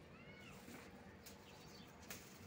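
Near silence outdoors, with a faint rising-and-falling animal call in the first half second.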